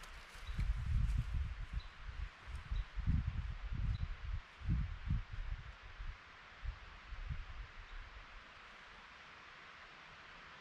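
Wind buffeting the microphone in irregular low rumbling gusts for most of the first seven seconds, dying away near the end to a steady faint hiss of wind in the conifers.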